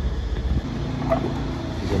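A low, steady engine hum.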